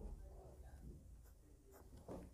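Faint scratching of a ballpoint pen on a sheet of paper, with the light brush of a hand on the page, mostly in the first second.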